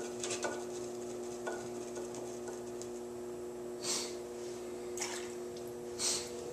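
Electric potter's wheel humming steadily as wet clay is thrown on it, with soft wet rubbing and squelching of hands on the spinning clay. Two brief watery swishes come about four and five seconds in.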